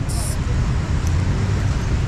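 Street traffic in a busy town: a steady low rumble of car and motorbike engines, with a short hiss at the very start.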